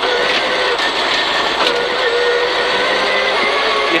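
Rally car engine heard from inside the cabin, held at a steady high engine note with slight brief dips, over loud road noise from the gravel.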